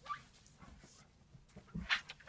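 Faint shuffling and handling sounds in a quiet room, with a short squeak at the start and a brief louder bump and rustle near the end as a podium microphone is handled.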